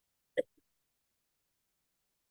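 A single very short vocal sound from a person, a clipped breathy syllable, about half a second in, with a faint tiny blip right after; otherwise silence.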